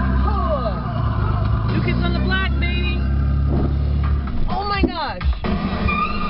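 Pop music playing on a car stereo, with women's voices singing along over the car's steady road and engine noise.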